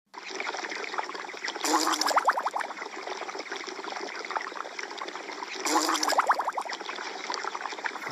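Bubbling-water sound effect of a Snapchat heart-bubbles lens, looping steadily. A louder run of quick rising bubble blips comes twice, about two seconds in and again about four seconds later.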